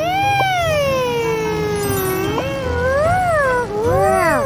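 A high-pitched cartoon character's voice holding one long wordless cry that slides slowly down in pitch, then swells up and falls again about three seconds in.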